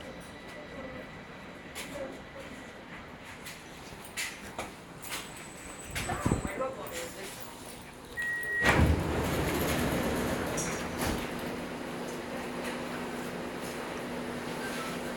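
Metro train doors closing: a short warning beep about eight seconds in, then the sliding doors shut with a thump. The car's running noise and a steady motor hum then rise as the train pulls away.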